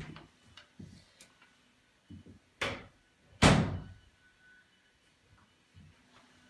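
An interior door, the door to a toilet room, being opened. A few light clicks come first, then two short rushing thuds under a second apart about two and a half seconds in, the second the louder.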